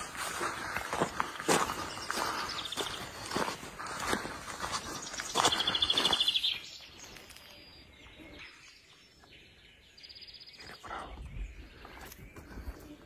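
Footsteps of people walking over a dirt forest track littered with broken branches, with birds chirping. A short rapid trill stands out about halfway, after which the steps fade and the birds carry on more quietly.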